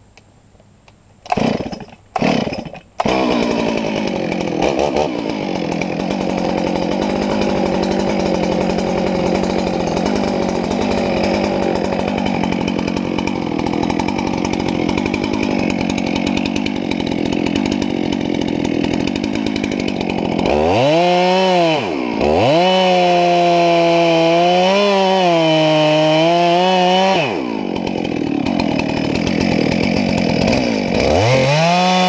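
Gas chainsaw: two short bursts, then it starts running about three seconds in and saws into the trunk of a large dead oak to cut the felling face cut. In the second half the engine runs at high revs with brief dips in pitch.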